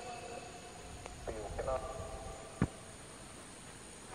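Faint, brief snatches of a voice, then a single sharp knock about two and a half seconds in.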